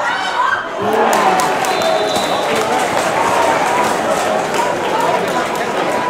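Gaelic football match crowd and players shouting, with several voices calling out at once over general crowd noise.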